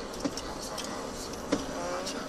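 Steady drone of a car's engine and tyres heard from inside the cabin while driving, with two brief clicks about a quarter second and a second and a half in.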